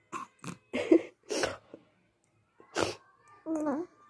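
A baby gives a run of short, breathy bursts of laughter, then a brief cooing squeal near the end.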